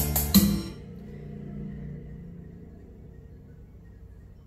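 Music played through Yamaha NS-2835 floor-standing speakers: a couple of loud drum hits in the first second, then the music drops away to a faint low held note that slowly fades.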